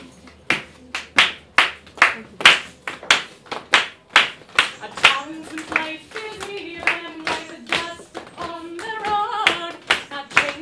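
Hand claps keeping a steady beat, about two to three a second, to open a flamenco-flavoured song. About five seconds in a woman's voice starts singing over the clapping.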